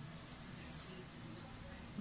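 Faint room tone with a brief, light rustle of a hand handling a tape measure and pencil on a paper pattern sheet, about half a second in.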